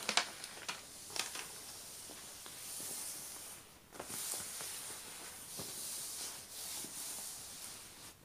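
Hands rubbing and smoothing a glossy cover sheet flat over a sticky diamond painting canvas: a soft swishing hiss that swells and fades several times, with a few light ticks.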